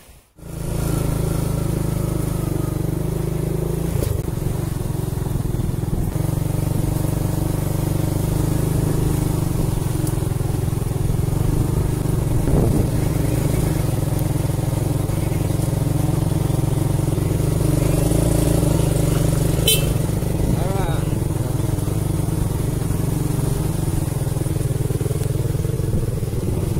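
Motorcycle engine running steadily while riding along a rough dirt road, its note shifting a few seconds in. A brief sharp click about twenty seconds in.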